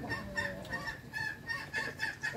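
Domestic fowl calling: a steady run of short, repeated high-pitched calls at an even pitch.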